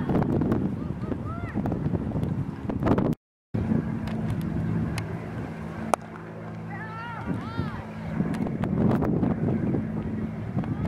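Wind buffeting the microphone outdoors, with one sharp crack of a cricket bat striking the ball about six seconds in. A few distant high shouts come around it.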